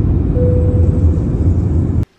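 Jet airliner cabin noise just after take-off: a loud, steady, deep rumble from the engines and airflow as heard inside the cabin, with a faint steady hum in the first half.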